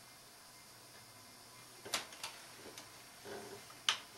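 A few small, sharp clicks in a quiet small room, about a second apart, the sharpest just before the end, with a short low murmur between the last two.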